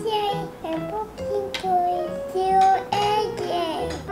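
A song with a high singing voice carrying the melody over steady low notes.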